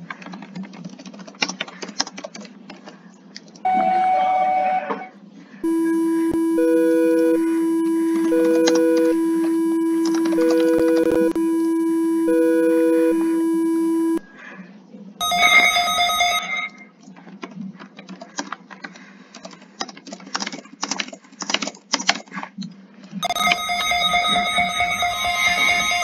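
Computer keyboard typing alternating with emergency-alert-style alarm tones played back from a video. The longest alarm is a steady low tone with a higher beep sounding four times over it for about eight seconds. Around it come shorter bursts of a higher multi-tone alarm, and a new alarm starts near the end.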